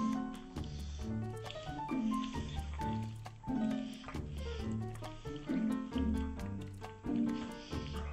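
Background music with a steady beat and a repeating bass line. Beneath it, a cat eating soupy wet cat food can be heard.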